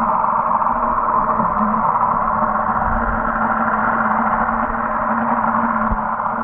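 Muffled underwater ambience heard through a camera's waterproof housing: a steady rushing noise with a constant low hum beneath it.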